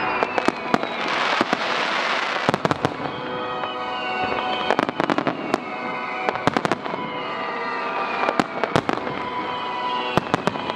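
Aerial firework shells bursting in quick clusters, many sharp bangs and crackles every second or two, over music playing along with the display.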